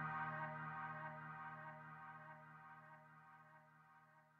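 Trap type beat's held synthesizer chord fading out at the end of the track, the sustained notes dying away steadily.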